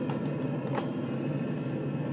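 Radio-drama sound effect of big aircraft engines droning steadily, the in-flight background of a bomber with a fighter hooked beneath it.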